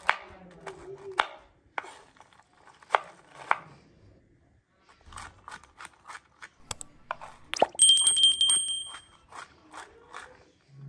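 Large kitchen knife chopping walnuts on a wooden cutting board: a few separate sharp strokes, a short pause, then quicker chops through the second half. A brief high ring sounds about eight seconds in.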